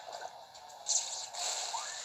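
A trailer's soundtrack through a small portable DVD player's speaker, thin with no bass: a sudden splash-like burst about a second in, followed by a noisy sloshing wash.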